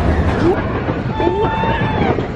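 Big Thunder Mountain Railroad mine-train roller coaster running along its track: a loud, steady rumble and clatter of the train, with a few brief higher tones over it.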